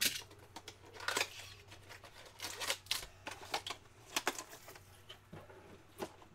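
A cardboard trading-card box being opened and a foil-wrapped pack pulled out and handled: a string of short rustles, taps and crinkles, loudest at the start and about a second in.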